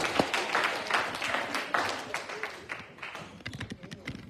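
Congregation applauding, the clapping loudest at first, then thinning to scattered claps and fading away over the last couple of seconds.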